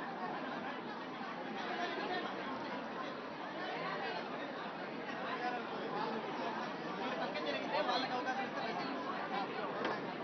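A crowd of people talking at once: steady overlapping chatter with no single voice standing out.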